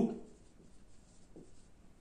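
Faint scratching of handwriting, someone writing in the pause between spoken words.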